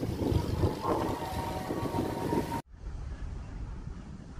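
Outdoor ambience of road traffic hum with wind buffeting the microphone. About two and a half seconds in, it cuts off suddenly to a quieter low wind rumble.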